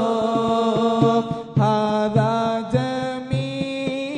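Arabic devotional chant in the style of a moulid or salawat recitation. It is sung in long, wavering melodic notes over a steady drum beat.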